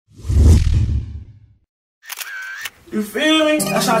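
A deep bass boom about a quarter second in that dies away within a second and a half. After a short silence a new hip-hop track begins, with a man's voice over music near the end.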